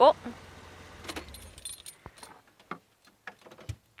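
Footsteps crunching through dry fallen leaves and twigs, in irregular crackles and snaps.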